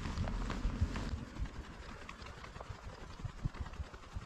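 Wind rumbling on the microphone with irregular soft knocks and footsteps as a camera is carried along an asphalt path; no motor running.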